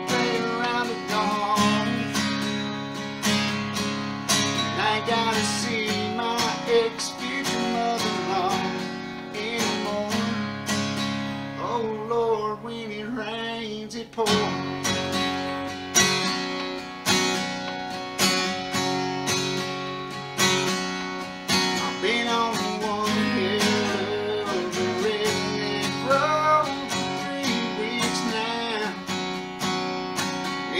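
Takamine acoustic guitar strummed in a steady rhythm, with a man's voice singing over it in places. The playing thins out briefly about halfway through, then the strumming comes back in strongly.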